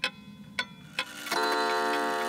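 Pendulum wall clock ticking a few times, then striking the hour about a second and a half in, its chime ringing on.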